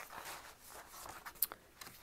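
Faint rustling and light taps of kraft-paper notebook inserts being handled and slid into a notebook cover, with a sharper click about one and a half seconds in.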